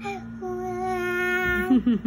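A young child's voice singing one long held note, then a few quick rising and falling vocal slides near the end, over a steady low hum.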